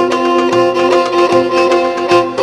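Greek folk dance music with a violin carrying an ornamented melody over a steady beat.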